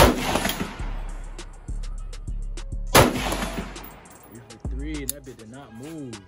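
Two AR-style rifle shots about three seconds apart, each a sharp crack followed by a short echo.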